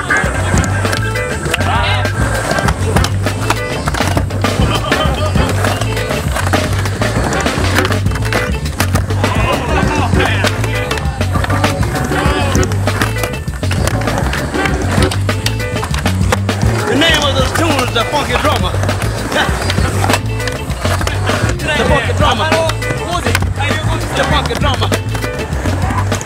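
Music with a steady, pulsing bass beat and some vocals, over skateboard wheels rolling on a concrete bowl.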